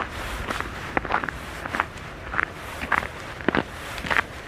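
Footsteps of a person walking on a snow-covered sidewalk, a steady pace of about two steps a second.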